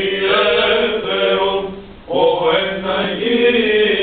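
Byzantine chant of the Greek Orthodox liturgy, sung by chanters at the Little Entrance over a steady held drone note (the ison). The melody breaks off briefly about halfway through and then resumes.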